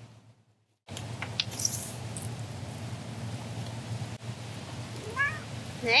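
Domestic cat meowing, a short rising call about five seconds in, over steady outdoor background noise.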